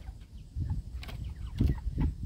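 Cornish Cross broiler chickens clucking in stacked plastic crates, over a low rumble, with a couple of light knocks about a second and a second and a half in.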